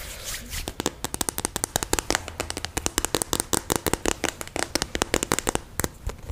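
Long fake fingernails tapping rapidly right up against a microphone: a fast, uneven run of sharp clicks, several a second, starting about a second in.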